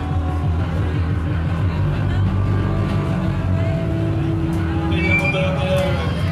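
Hardcore punk band playing live through a club PA, dominated by loud, heavily distorted electric guitar and bass in a dense, steady low wall of sound.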